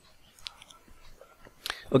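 Quiet room tone with a few faint clicks, the clearest just before the end, then a spoken "okay".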